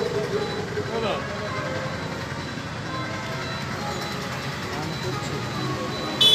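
A crowd of many voices talking at once, blended with steady road-traffic noise.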